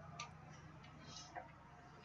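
Faint, scattered clicks and a soft scrape of trading cards being handled, as one card is lifted off a small stack. A low steady hum sits underneath.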